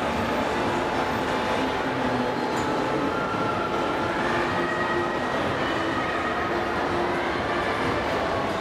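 Steady din of a large, busy exhibition hall, with faint tones drifting through it.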